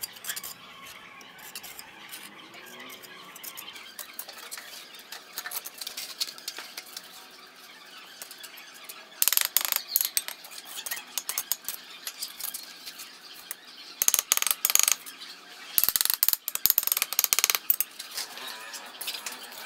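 Steel mason's trowel scraping and tapping on clay bricks and wet mortar, with small clicks throughout and bursts of harsh scraping about nine seconds in, again about fourteen seconds in, and near the end.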